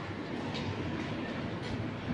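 Steady background noise of a busy noodle shop: a low hum and hiss with a few faint light clinks.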